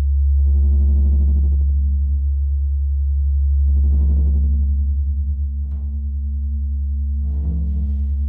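Free improvisation by a small ensemble: a deep, steady low drone with a few short bursts of higher sound over it, loudest at the start.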